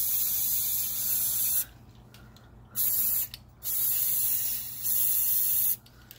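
Aerosol spray paint can hissing as paint is sprayed onto water in a tub, in three bursts: a long spray cutting off about a second and a half in, a short burst near the middle, and another spray of about two seconds lasting almost to the end.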